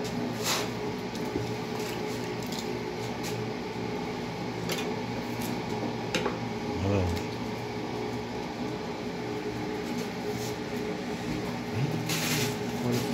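Steady low mechanical hum of a kitchen appliance motor, with a few light clicks and knocks from kitchen utensils being handled.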